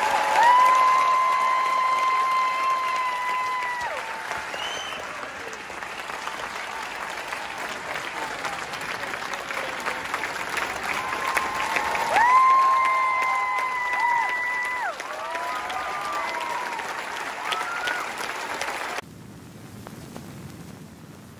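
Theatre audience applauding, with long, high-pitched shouts held over the clapping twice, near the start and about twelve seconds in. The applause cuts off suddenly near the end.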